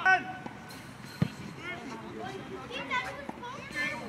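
Football players shouting to each other across the pitch, with a loud shout at the very start and the thud of the ball being kicked about a second in.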